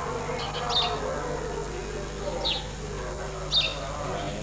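A bird calling with short, high chirps that fall in pitch, a few times about a second or so apart, the loudest near the end, over faint background voices and a steady low hum.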